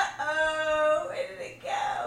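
A person's voice holding one steady pitch for about a second, like a sung 'aaah', then a shorter call near the end.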